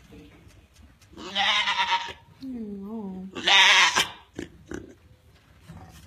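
African Pygmy goat doe bleating: two loud bleats with a quieter, wavering bleat between them. She is in early labour, restless with the discomfort of the coming kidding.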